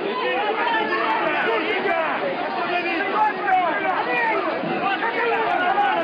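A crowd of many voices talking and shouting over one another, with no single voice standing out.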